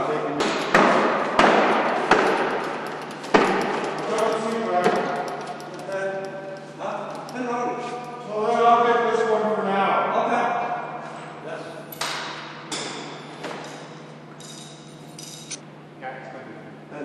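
Sharp metal clinks and knocks of a long-handled socket wrench on the bolts of a telescope mirror cell as they are loosened, scattered irregularly, most of them in the first few seconds and a few more near the end, under indistinct men's voices.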